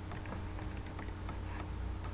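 A few faint, scattered clicks from a computer mouse and keyboard while working through dialog boxes on a computer, over a steady low hum.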